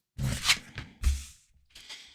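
Tarot cards being handled: a card is drawn from the deck and laid down on a cloth-covered table. There are two short rustling sounds, the second, about a second in, with a soft low thump.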